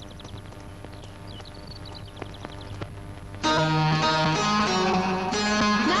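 Film soundtrack music: soft, sparse plucked-string notes, then a much louder, fuller passage of held notes comes in suddenly about three and a half seconds in.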